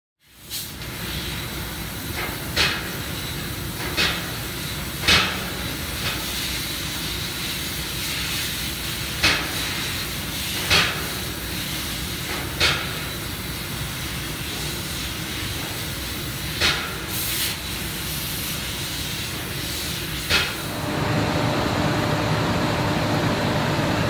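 Fiber laser cutting machine cutting stainless steel sheet: a steady hiss broken by about seven short, sharp bursts. About three seconds before the end the hiss drops away, leaving a lower, steadier hum.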